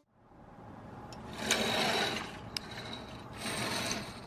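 Rustling and rubbing noise with a few light clicks, fading in after a moment of silence and loudest about two seconds in.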